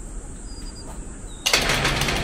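Faint outdoor background with a few short bird chirps, then, about one and a half seconds in, a sudden loud burst of rattling noise lasting about a second.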